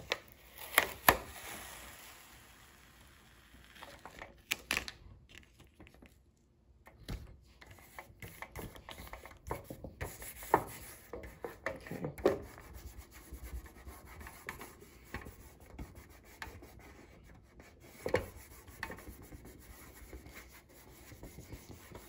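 Hands rubbing and smoothing wood-grain self-adhesive contact paper onto a tree collar: a low, uneven rustle broken by scattered sharp crinkles and clicks as the sheet and its backing are handled.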